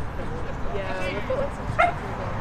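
Players' voices calling out across a football pitch during play. Near the end comes one short, sharp, high yelp, the loudest sound here.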